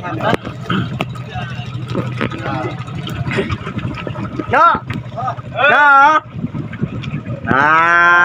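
People's voices letting out long, wavering whoops three times, louder each time and loudest near the end, over a steady low engine hum and scattered knocks.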